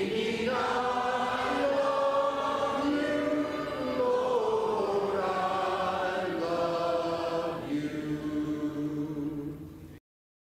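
A church congregation singing a hymn together in unaccompanied voices, holding long notes phrase by phrase. The singing fades away at the end.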